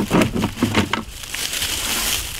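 Steel 220 body-grip trap and its chain rattling and knocking against a plastic bucket as they are lifted out: a quick run of clicks in the first second, then a softer rustle.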